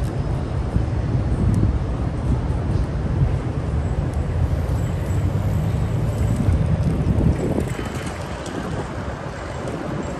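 Wind buffeting the phone's microphone: a loud, uneven low rumble that eases somewhat after about seven and a half seconds.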